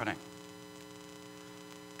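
A steady electrical hum with several held tones, like mains hum in a sound system, heard in a gap between spoken phrases.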